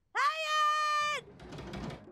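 A cartoon boy's voice wailing a long, drawn-out, high-pitched "nooo" (Turkish "hayır"), held steady for about a second and then cut off.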